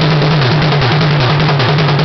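Drum kit played in a fast, continuous roll around the toms, the strokes alternating between two drum pitches, with no bass drum under it.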